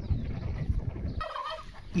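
Lambs cropping grass close by, a rough tearing and chewing crunch. Then, about a second in, a lamb starts a high, quavering bleat.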